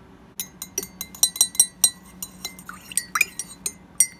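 Metal spoon stirring coffee in a ceramic mug, clinking against the sides in a quick run of sharp, ringing taps that starts about half a second in, as creamer is mixed in.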